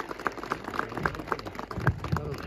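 Scattered applause from a small seated audience: a patter of irregular hand claps.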